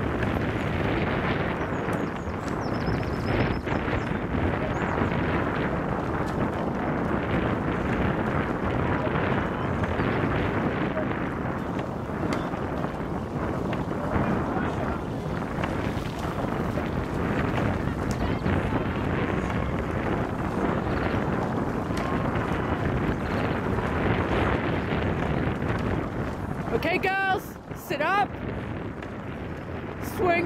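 A loud, steady rush of wind buffeting the microphone, with a voice shouting briefly near the end.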